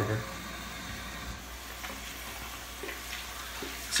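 Water running steadily from a bathroom sink tap while soap lather is rinsed off hands.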